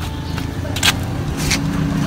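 A steady, low motor-vehicle engine rumble, with two brief rustles about a second and a second and a half in.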